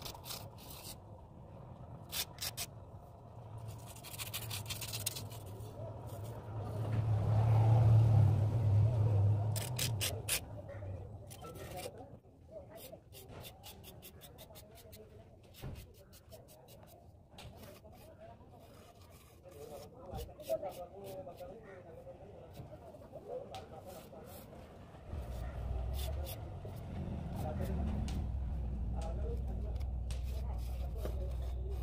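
Small mason's trowel scraping and tapping on fresh cement plaster while a leaf design is cut into a wall, heard as many short sharp clicks and scrapes. A low rumble swells and fades early on, and a steady low hum comes in near the end, under faint background voices.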